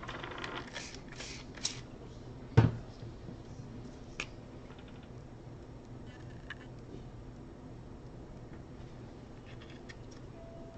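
Brusho watercolour crystals shaken from their small plastic pot: a soft, dry rattling over the first two seconds, then one sharp knock, the loudest sound, and a couple of faint clicks.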